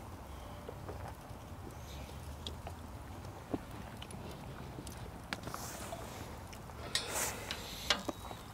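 Wood fire crackling quietly in a steel fire pit: a few scattered pops over a steady low hum, with a short scraping rustle near the end.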